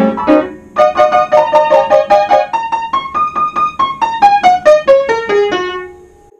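An upright piano, just put back together after repair, played by hand: a quick run of struck notes and chords, a short pause, then a steady line of notes that climbs and then steps down to a lower note, which is held and fades near the end.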